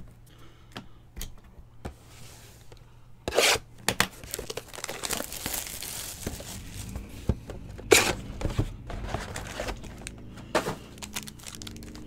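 Wrapping torn off a box of 2020 Panini Certified football cards and crinkled by hand. There is a sharp rip about three seconds in and another near eight seconds, with crinkling between and after.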